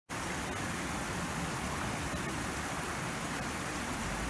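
Shallow canal water flowing, a steady even rush with no breaks.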